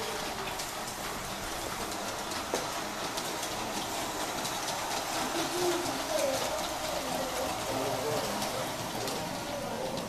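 Large-scale model train rolling along its track: a steady running rattle with many small irregular clicks from the wheels on the rails, with faint voices behind it.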